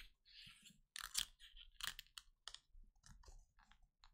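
Near silence broken by a few faint, short clicks and taps, scattered irregularly over the few seconds.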